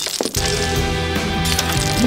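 Shards of broken green celadon pottery clinking as they scatter on a stone floor, right at the start, over steady dramatic background music.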